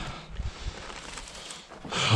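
Faint handling noise of planter parts: a few soft clicks in the first second over a steady background hiss.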